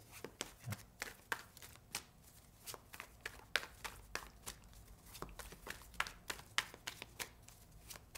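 A deck of tarot cards shuffled by hand, packets passed from one hand to the other: soft, irregular card slaps and flicks, a few each second.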